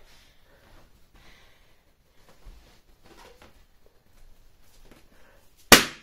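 A confetti-filled balloon pricked and bursting with one sharp, loud pop near the end, after a few seconds of faint rustling and handling.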